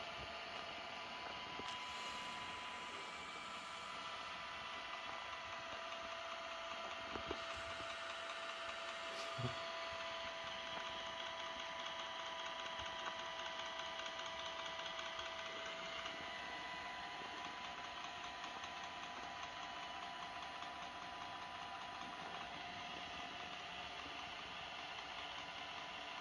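iRobot Roomba robot vacuum driving across carpet, its motors giving a steady whir with a thin high whine, and a couple of faint knocks partway through.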